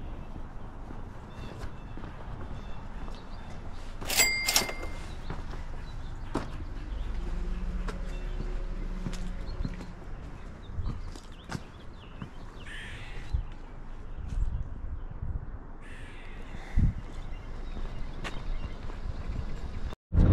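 Outdoor ambience with footsteps and small knocks, and a bird calling a few times, loudest in a sharp double call about four seconds in.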